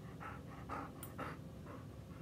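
A dog panting close by in quick, rhythmic breaths, a few each second.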